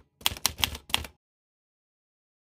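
Typewriter keys clacking in a quick run of about half a dozen strokes, a sound effect laid under text typing onto the screen; it stops a little over a second in.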